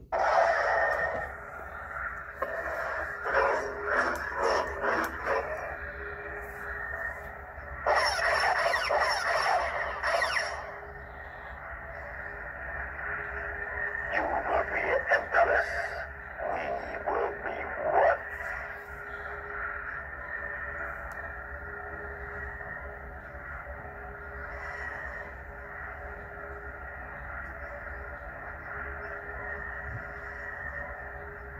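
Lightsaber soundboard in an Aegis Sabers Guardian hilt playing its blade hum through the hilt speaker. Several louder saber effect sounds come in the first half, and after that only the steady hum is left.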